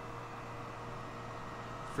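Air conditioner running: a steady hum with a low drone and a few faint, steady tones above it.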